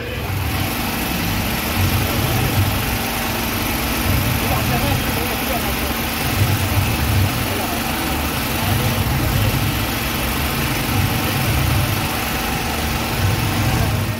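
An engine running steadily at a low idle, with voices of people around it.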